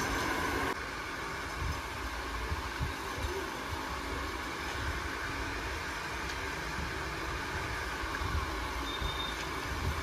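Steady, low background noise with a faint rumble and no distinct events. The level drops slightly under a second in, at a cut.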